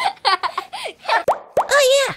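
Cartoon toddler voices babbling short wordless syllables, with a couple of quick popping cartoon sound effects near the middle.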